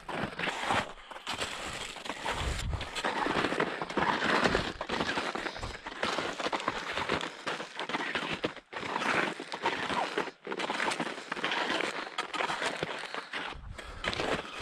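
Skis fitted with climbing skins swishing and scraping over snow in a run of strides on an uphill skin track, broken a few times by short gaps where the shots change.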